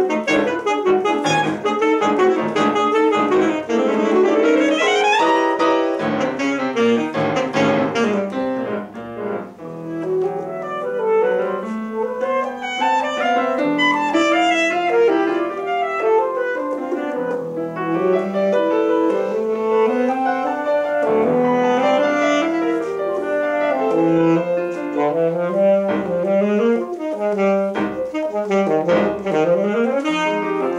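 Alto saxophone and grand piano playing a fast classical duo passage full of quick runs. About four seconds in, the line sweeps sharply upward, and it briefly drops in loudness around nine seconds before the busy playing resumes.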